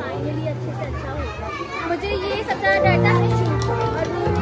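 Voices of a small home gathering over music: a steady low bass and held instrumental notes that grow fuller about three seconds in, with several people talking at once.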